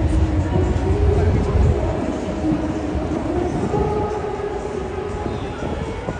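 A train running past, a low rumble under a steady hum that eases after about two seconds, with crowd chatter around it.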